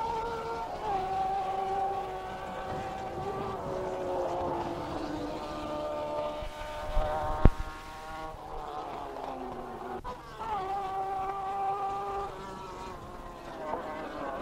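Racing saloon car engines held at high steady revs, a buzzing note that drops in pitch now and then as cars go past, with a few abrupt changes in the sound. A single sharp click about halfway through.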